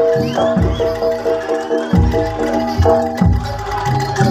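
Javanese gamelan-style music played for a dragon (barongan) dance: ringing metal keyed tones held over repeated drum strikes.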